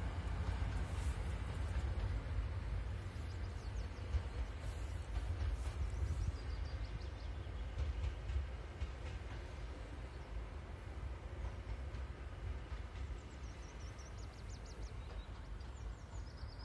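Soviet-built M62 (ST44) diesel locomotive running light, its two-stroke V12 diesel giving a deep, steady drone that slowly fades as the locomotive pulls away into the distance.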